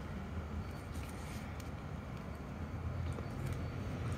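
Quiet outdoor background noise: a low, steady rumble with no distinct events.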